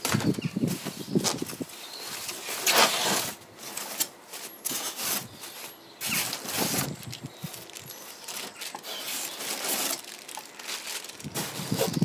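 Tissue wrapping paper and plastic bags rustling and crinkling in irregular bursts as parts are lifted out of a foam shipping box.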